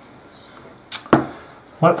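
Two sharp clicks about a second in, the second with a dull knock, as a marker pen is picked up and handled over a sheet of paper on a cutting mat.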